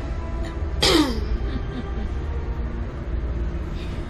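Steady low rumble of the Hogwarts Express ride train carriage running. About a second in, a short loud sound falls steeply in pitch.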